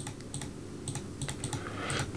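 A scattered run of light clicks from a computer keyboard and mouse, about eight in two seconds, as drawings are deleted from a chart on screen.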